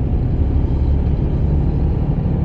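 Heavy truck's diesel engine running steadily with road noise, heard inside the cab while cruising on the highway: a steady low drone.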